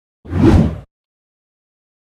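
A single whoosh transition sound effect, about half a second long and heaviest in the low end, swelling and then cutting off.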